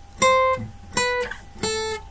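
Acoustic guitar playing three high single notes, picked one at a time about two-thirds of a second apart, each ringing briefly and dying away: the high lead-guitar notes of the song's original recording.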